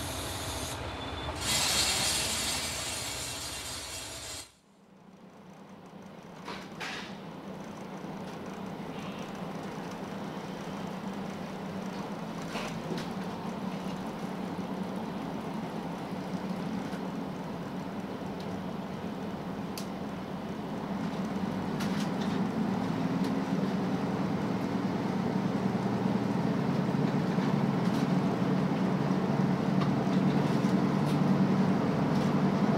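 Cabin noise inside a KiHa 185-series diesel railcar on the move: steady running noise with a low engine drone that grows louder over the last ten seconds or so, and a few faint clicks. It opens with a few seconds of louder, hissing outdoor noise at the station before a sudden cut.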